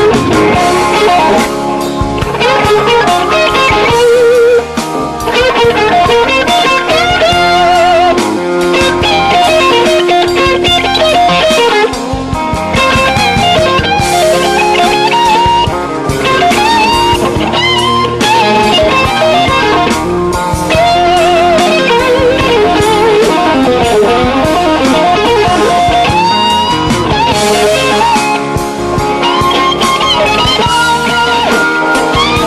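Slow blues instrumental passage: an electric guitar solo with bent notes and wide vibrato over a full band backing.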